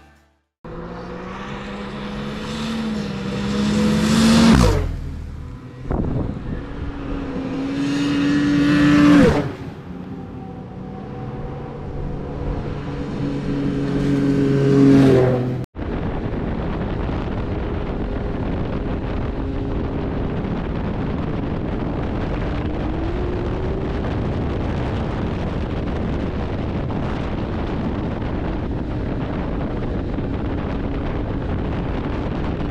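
Snowmobiles passing one after another, three times: each engine grows louder and drops in pitch as it goes by. After that comes a steady drone of snowmobile engine and wind noise while riding.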